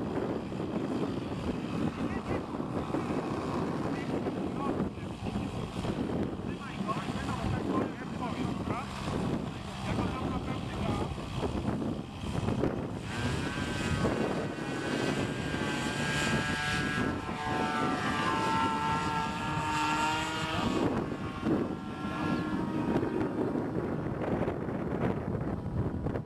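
Engine and propeller of a radio-controlled model airplane. About halfway through, a pitched whine comes up over a rushing background and shifts up and down in pitch for several seconds as the plane takes off and climbs away. It fades toward the end.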